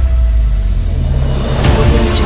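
Cinematic transition in trailer-style theme music: the melody drops away under a sustained deep bass boom. About one and a half seconds in, a rising whoosh sweeps up into the next section.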